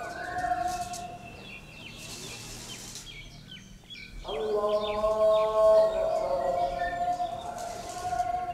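A voice chanting in long, steady held notes. It breaks off about a second in and comes back with a short upward slide a little after four seconds. In the gap, small birds chirp.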